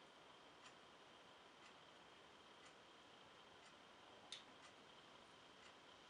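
Near silence: faint, regular ticks about once a second, with one sharper click about four seconds in.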